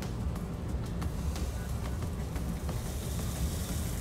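A sheet of paper being folded and handled as tiny beads are slid off it into a small packet: a faint rustle with a few light ticks, over a steady low rumble.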